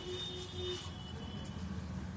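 Room tone between sentences: a steady low hum, with a faint thin tone in the first second.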